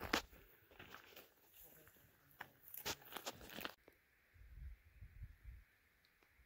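Faint footsteps crunching and scuffing on dry, stony ground over the first few seconds, then a low rumble for about a second near the end.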